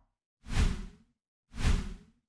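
Two whoosh sound effects from an animated end-card logo, each a short swell under a second long with a deep rumble beneath, about a second apart.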